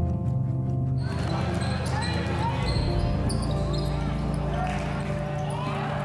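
A basketball bouncing on a gym court with voices in the gym, heard under background music with sustained low notes.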